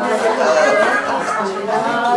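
Indistinct speech: several voices talking over one another.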